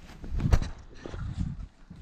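Rustling and thumping as a thin foam mattress and its cotton sheet are lifted up off a wooden floor, with a sharp knock about half a second in, the loudest sound.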